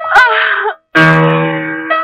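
A short high wailing cry whose pitch bends up and down, followed about a second in by a long held note of the film's dramatic background score that slowly fades.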